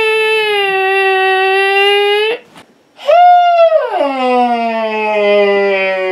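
A man wailing in long, drawn-out voiced notes. One high held note cuts off a little past two seconds; after a short gap a second wail rises briefly, then slides down into a lower, long moan.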